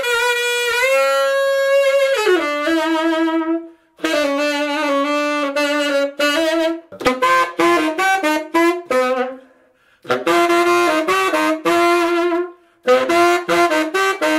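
Tenor saxophone with a Yanagisawa metal mouthpiece (size 8) played loud in a pop-style solo, with a powerful tone and high notes that cut through. Held notes, one sliding down about two seconds in, alternate with quick runs of short notes, with breath pauses about four and ten seconds in.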